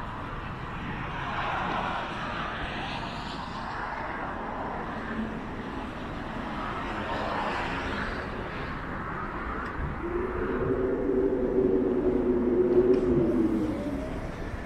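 Cars passing on a nearby road: two swells of tyre and engine noise that rise and fade. In the last few seconds a louder, steady hum of several tones comes in and stops just before the end.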